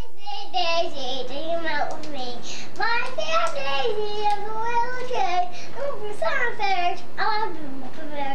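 A young boy singing in a high, wavering voice, the melody sliding up and down without a break.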